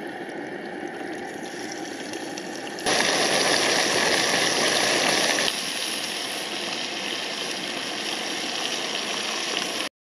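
Pork frying in oil in a small pot on a multi-fuel camping stove: a steady sizzle over the burner's hiss. About three seconds in the sizzle turns suddenly louder and brighter for a couple of seconds, then settles back a little.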